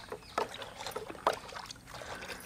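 Chocolate milk being stirred and ladled in steel pots: liquid sloshing and splashing, with two short sharp splashes or ladle knocks about half a second and a second and a quarter in.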